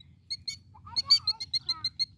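Killdeer giving a quick run of sharp, high, evenly repeated alarm calls, several a second, as it guards its egg on the ground.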